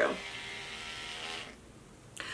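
Electric toothbrush held to the chest as a vibrating massager, buzzing steadily and then stopping about a second and a half in.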